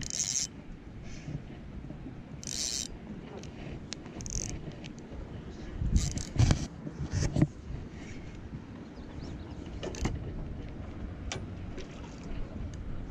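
Close handling noise from an angler working a spinning rod and reel, his sleeve rubbing against the microphone: scattered rustles and clicks, with a cluster of heavy knocks about six to seven and a half seconds in.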